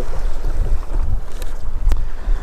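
Wind buffeting the microphone, an uneven low rumble, with two small clicks: one about a second and a half in and one near the end.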